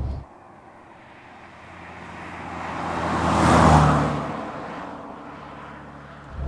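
Austin Maestro with its A-Series four-cylinder engine and side-exit exhaust driving past at road speed: the engine and tyre noise swell as it approaches, peak a little past halfway, then fade as it drives away.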